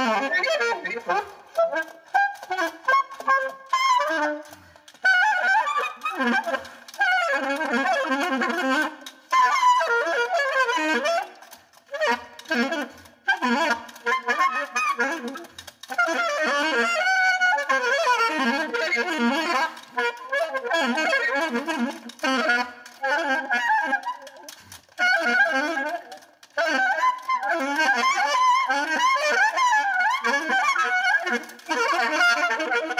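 Solo alto saxophone improvising freely: quick, darting runs of notes in phrases broken by brief pauses.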